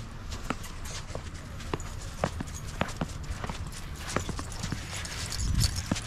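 Footsteps on packed, icy snow: crisp crunches at a walking pace of about two steps a second, over a steady low rumble that grows a little louder near the end.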